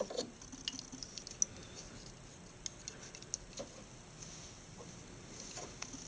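Faint, scattered small ticks and rustles over low room hiss, with one slightly sharper tick about a second and a half in: handling noises at a fly-tying vise.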